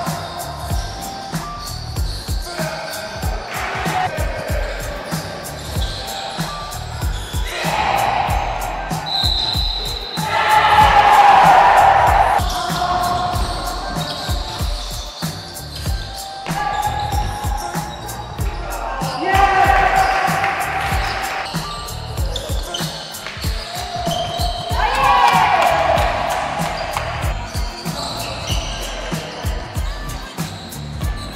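Basketballs bouncing on a gym floor during play, with many short thuds from dribbling.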